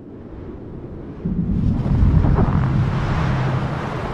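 Snowstorm wind on a film soundtrack: a steady rush of wind that swells about a second in and carries a deep rumble beneath it.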